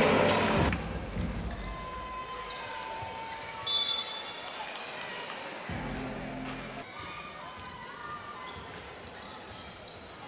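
A basketball bouncing on an indoor court during play: a scatter of short, sharp knocks over faint arena background.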